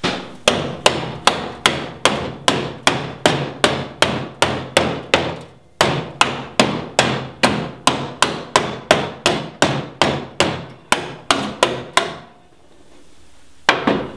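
Small hammer striking the cut flap of a Jeep Cherokee XJ's steel rear quarter panel to fold the sheet metal inward: a long run of sharp metallic blows, about three a second, with a brief break in the middle. The blows stop about two seconds before the end, followed by one last blow.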